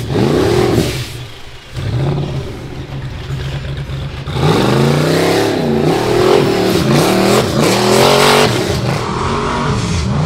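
A rock bouncer's engine revving in repeated bursts as it climbs a rocky hill, its pitch rising and falling with each blip of the throttle. The throttle eases off about a second in, then comes back hard from about halfway with quick up-and-down revs.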